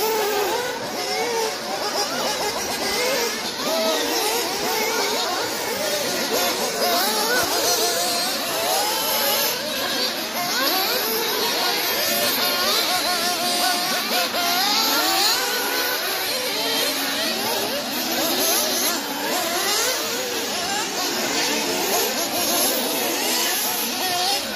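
Several 1/8-scale nitro RC buggies' small two-stroke glow engines revving together, their high-pitched notes rising and falling continually and overlapping as the cars accelerate and brake around the track.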